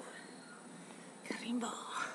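A woman's faint breathy voice, a short whisper or hard breath after dancing, a little past halfway, over low background hiss.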